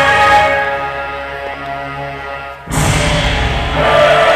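Runway music over the hall's sound system fading down, then a new track cutting in suddenly about two-thirds of the way through, louder and with a heavy low end.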